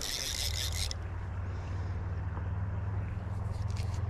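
Fly reel's ratchet buzzing for just under a second as line runs through it with a fish on, then a few faint clicks near the end, over a steady low rumble.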